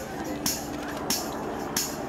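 Folk dance tune accompanying maypole dancing: a steady beat of bright, jingly strokes about every two-thirds of a second under a held melody note.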